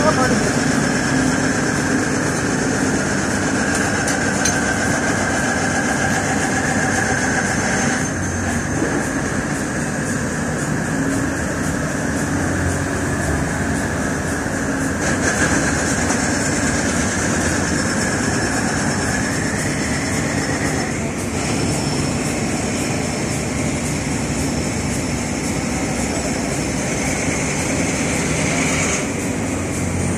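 Heavy machinery running steadily, with indistinct voices in the background.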